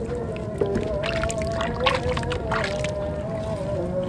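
Water splashing and dripping in a basin of muddy water as hands scoop under a soaked clay block and lift it out, with several splashes in the middle of the clip. Steady background music with long, slowly wavering held notes plays throughout.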